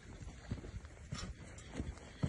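Faint footsteps on the ground, a few irregular steps of someone walking.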